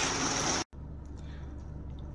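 Steady hiss of heavy rain on the caravan that cuts off abruptly about half a second in. After it comes a much quieter, steady low hum.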